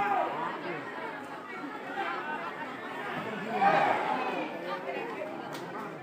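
Crowd chatter: many people talking at once, with one voice rising louder a little past the middle.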